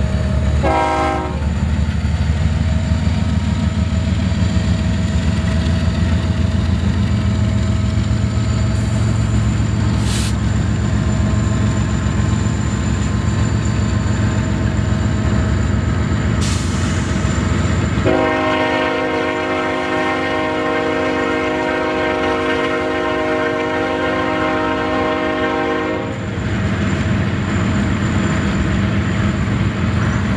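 Several Union Pacific diesel-electric freight locomotives passing at close range, their engines a steady deep rumble. A train horn sounds briefly about a second in, then gives one long chord-like blast of about eight seconds a little past the middle.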